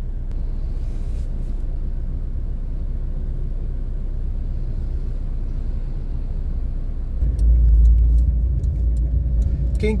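Steady low rumble inside a car, which grows louder and deeper about seven seconds in as the car moves off.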